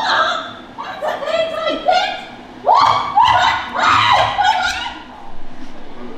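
A high-pitched theatrical voice crying out in short bursts of rising wails, mixed with snickering laughter.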